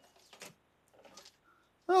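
Mostly quiet, with a few faint brief soft noises, then a voice saying "Oh" right at the end.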